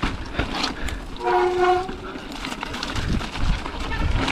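Mountain bike riding down a rough, rocky trail: tyre rumble with rapid clatter and knocks from the bike. A brief steady honking tone about a second in, lasting under a second.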